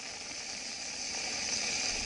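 Heavy rain falling: a steady hiss that grows slowly louder.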